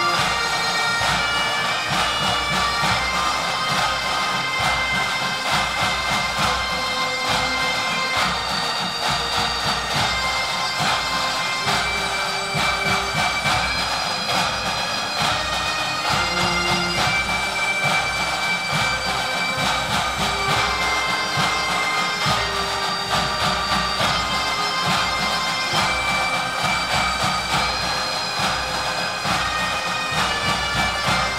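Pipe band playing: Highland bagpipes sound a melody over their drones while pipe-band snare drums and a bass drum keep up a steady beat.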